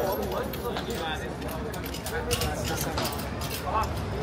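Bystanders talking in the background, with a few sharp clicks in the second half.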